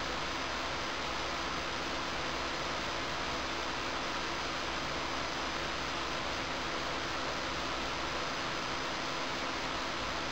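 Sun Ultra 1 workstation's cooling fans running with a steady hiss and faint steady hums as it boots from CD-ROM. A low hum underneath drops away about eight seconds in.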